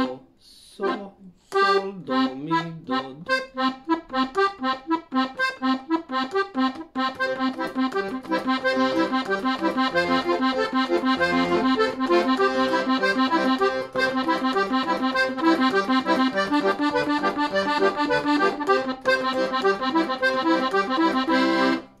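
Hohner Verdi II piano accordion playing a repeating arpeggiated accompaniment pattern, right-hand notes over left-hand bass, in an even rhythm. It starts after a short pause about a second in and fills out into a denser, steadier pattern from about eight seconds in.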